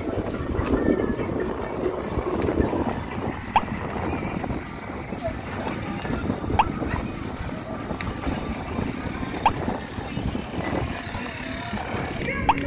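Night street ambience: a steady low rumble of traffic, broken by short sharp clicks about every three seconds.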